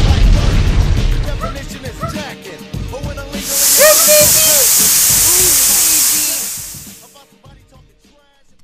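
Sound-effect foley of a fire being doused in water: a loud low rumble at the start, then a loud, steady hiss of steam from about three seconds in that fades away near the end.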